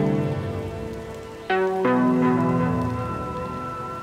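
Instrumental music: a sustained chord fades out, then new notes are struck about one and a half seconds in and decay slowly, over a faint hiss.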